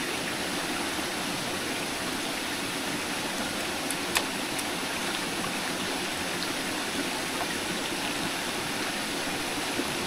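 Stream water running steadily, with a sharp click just after four seconds in.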